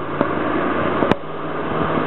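Steady noise of road traffic, with a single sharp click about a second in.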